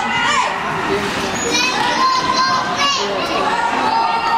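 Children's voices chattering and shouting over one another, with several high, pitch-bending calls in the middle.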